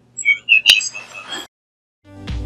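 A few short, high-pitched electronic chirps with one sharp click a little under a second in, cutting off abruptly about a second and a half in.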